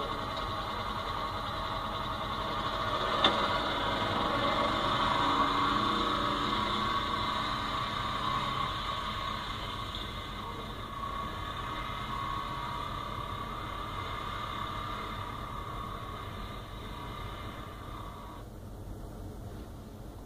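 Engine of a side-by-side utility vehicle running as it drives away, heard through a TV speaker. It swells a little a few seconds in, then fades and cuts off near the end.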